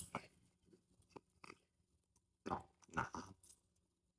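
A person chewing a mouthful of rice with the mouth closed: faint, wet mouth clicks, with two louder smacks about two and a half and three seconds in.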